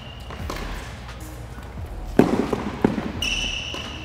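Tennis rally on an indoor hard court: rackets strike the ball about half a second in, just after two seconds (the loudest hit) and again near three seconds. A high squeak sounds near the end, over a steady low hall hum.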